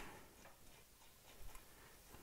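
Near silence, with a few faint metallic ticks about one and a half seconds in from bolts being started by hand into the engine's rear motor plate.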